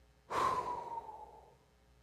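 A man's audible sigh: one long breath out that starts suddenly about a third of a second in, falls slightly in pitch and trails off over about a second.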